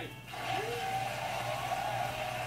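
Audience applauding and cheering, swelling up about a third of a second in and holding steady.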